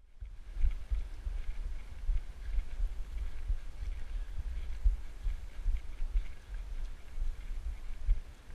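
Running footfalls and wind buffeting on a body-worn camera's microphone while climbing steps on a woodland trail: a low, uneven rumble with irregular thuds.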